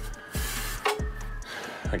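Background music with a steady beat. Over it, a metallic scrape of about half a second as the power steering pump's through-bolt slides out of its bracket, then a single metal clink about a second in.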